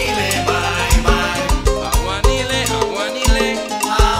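Afro-Cuban timba band playing an instrumental passage: bass, drums and timbales under several pitched melodic parts, with sharp percussion hits throughout.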